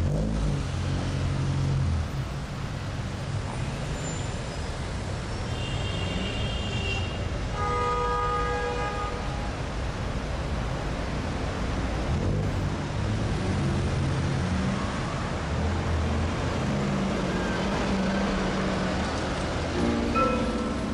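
City street traffic: engines running over a steady rumble, with car horns sounding, a short high one about six seconds in and a fuller one held for about a second and a half soon after.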